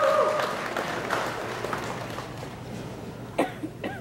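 Audience applause in a large hall, thinning out and fading. Two short coughs come near the end.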